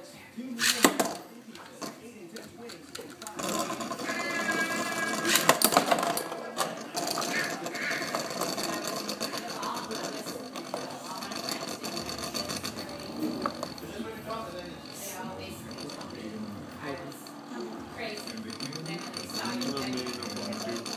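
Two metal Beyblade spinning tops launched into a plastic stadium, with a sharp clatter about a second in as they land. Then a steady whirring rattle with scattered clicks as they spin and knock against each other and the stadium walls.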